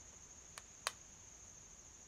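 Steady, faint, high-pitched drone of insects singing, with two sharp clicks about a third of a second apart near the start, the second one louder.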